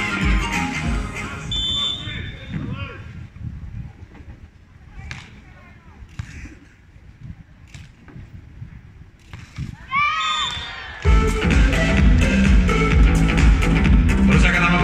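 Stadium PA music that fades out within the first few seconds, then a quieter stretch of match play with a few short, sharp sounds. A voice calls out about ten seconds in, and loud music starts up again about a second later.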